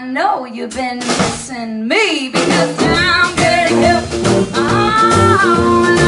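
Live blues band playing. For the first two seconds or so the bass and drums drop out and a voice slides through sung notes alone, then the full band of drum kit, upright bass and electric guitar comes back in.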